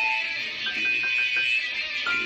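Rock-and-roll electric guitar solo over a band backing, with a run of quick repeated high notes about a second in.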